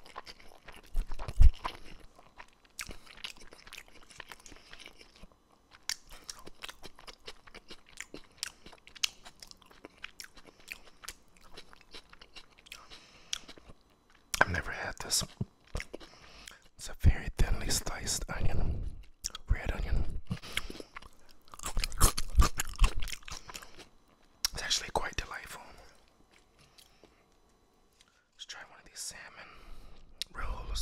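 Close-miked chewing of sushi: irregular wet mouth clicks and pops, with louder stretches of chewing in the second half and a brief near-silent pause shortly before the end.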